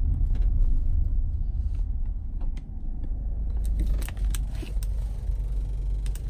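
Low, steady cabin rumble of a 2011 Kia Sorento on the move: road and engine noise, with the engine running very smoothly. A few light clicks and rattles come in the second half.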